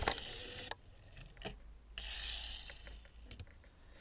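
Geared friction motor of a toy Ferrari 360 Spider model car whirring: a short burst as the car is rolled backward, then a second whirr from about two seconds in that fades away as the car runs on by itself.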